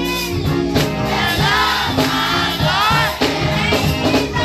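Gospel choir of children singing, with a girl leading into a microphone over the sustained voices of the group, backed by drums keeping a steady beat.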